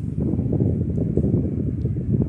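Pelonis desk fan blowing air straight onto the microphone, a loud, low, buffeting wind rumble.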